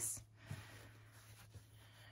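Faint rustling of fabric being handled as a sewn pocket is tucked through an opening in the cloth, with a couple of soft taps.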